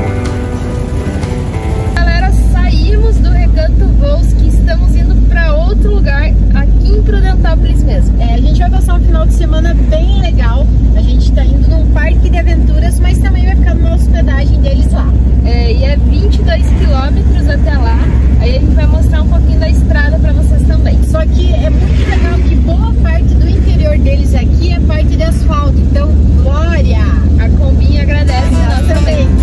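Volkswagen Kombi van driving, heard from inside: a loud, steady low rumble of engine and road noise that starts about two seconds in, with voices over it. Guitar music plays just before the rumble comes in.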